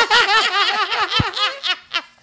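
Several people laughing hard together in rapid, repeated bursts that die away near the end.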